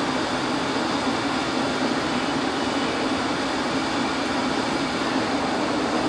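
Steady background hum and hiss with no separate events, unchanging in level throughout.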